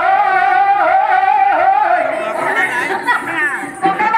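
A voice singing a long, wavering held note of a Telugu devotional folk song to Venkataramana. From about halfway, other voices and chatter overlap it.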